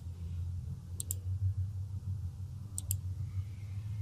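Computer mouse clicking as polygon vertices are placed on a map: two quick double ticks, about a second in and near three seconds in, over a steady low hum.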